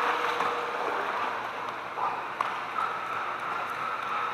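Swimming-pool water sloshing and gurgling steadily, with a couple of small knocks about two seconds in.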